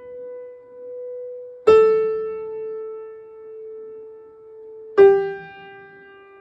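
Upright piano playing single notes that are each held for a long time and left to die away: one note is still ringing at the start, a slightly lower note is struck about two seconds in, and a lower one again about five seconds in, so the melody steps downward.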